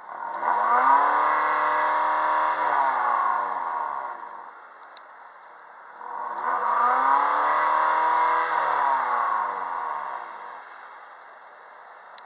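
Exhaust of a 2006 Mazda 3's 1.6-litre petrol inline-four, revved twice about six seconds apart. Each time the engine note climbs, holds for a moment and falls back to idle over about four seconds. The exhaust is judged clean.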